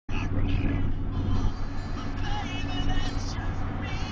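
Steady low road and engine rumble inside the cabin of a moving car, with music and faint voices underneath.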